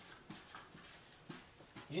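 Marker drawing on a whiteboard: a few faint, short strokes.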